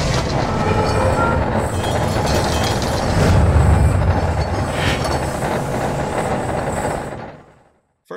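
Logo-intro sound effect of turning metal gears: loud, dense mechanical clattering over a low rumble, with a few brief surges. It fades out about seven and a half seconds in.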